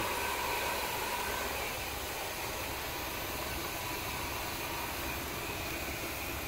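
454 V8 engine idling steadily at about 750 to 800 RPM, heard from the cab, just after its carburetor idle screw was turned down.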